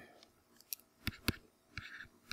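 Faint taps of a stylus on a pen tablet: a few sharp clicks about a second in, then a short scratch of the pen writing near the end.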